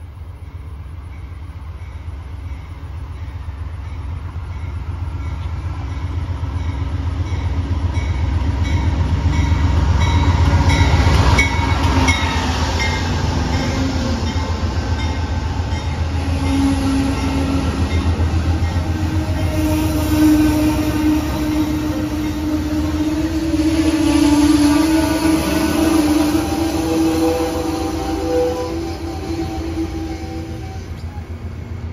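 Amtrak Superliner bilevel passenger train coming into the station. Its rumble grows louder to a peak about ten seconds in as the head end passes, then the cars roll by close, with several steady ringing tones sounding over the rumble through the second half.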